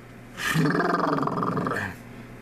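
A man's loud, drawn-out, rough vocal sound, like a groan or growl, starting about half a second in and lasting about a second and a half.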